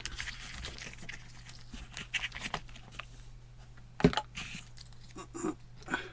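Hands handling a small LiPo battery and its wire leads in a foam glider's fuselage: scattered small clicks and rustles, with one sharp click about four seconds in.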